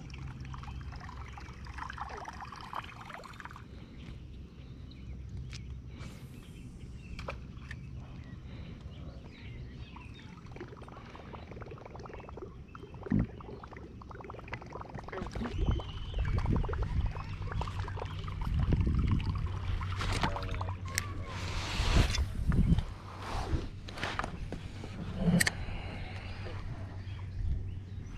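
Water sloshing and trickling around a canoe, with scattered clicks and knocks on the boat, getting louder and busier from about halfway through.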